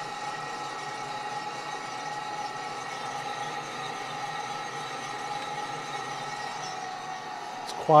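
Small gas-fired drum coffee roaster running steadily, its drum, exhaust fan set to medium-high air and burner making an even hum and hiss, near the start of first crack. A single faint click comes near the end.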